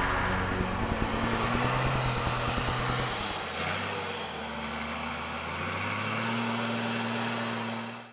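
A 4x4 off-road vehicle's engine running, with a fast low pulsing for the first few seconds and its pitch shifting a few times. It fades out at the very end.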